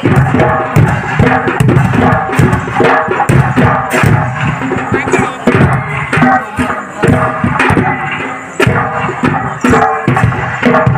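Percussion-driven Chhau dance music, with loud, dense drumbeats running under a sustained melody.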